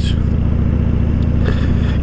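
Harley-Davidson Dyna Fat Bob's air-cooled V-twin engine running at a steady cruise, a constant low, pulsing exhaust note with no change in revs, heard from the rider's seat.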